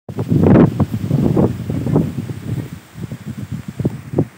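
Wind gusting across a phone's microphone, a loud, uneven rumbling buffet that is strongest about half a second in and eases off after about three seconds.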